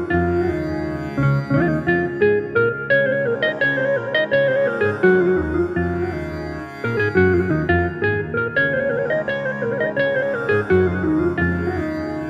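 Instrumental Carnatic melody in raga Bilahari played on an electronic keyboard with a plucked-string voice, its notes sliding and bending in gamaka ornaments, with a lower accompaniment running underneath.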